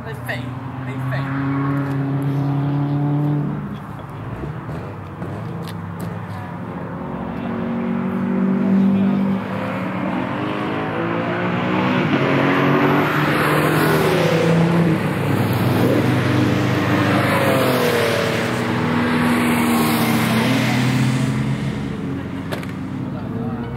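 Car engines running on a race track, their pitch rising and falling with throttle and gear changes. The sound swells and stays louder through the second half as a car approaches.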